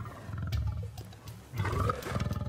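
White lion growling: two low, pulsing growls, one about half a second in and another near the end.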